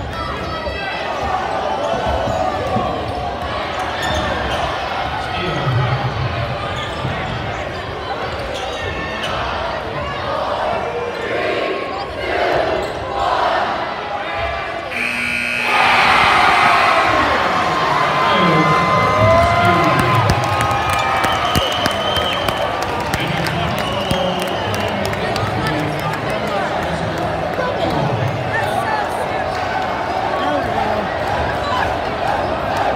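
Gymnasium crowd noise with a basketball bouncing during the last seconds of a high school game. About halfway through, the final buzzer sounds, and the crowd breaks into loud cheering and shouting that carries on as the game ends in a win for the home fans.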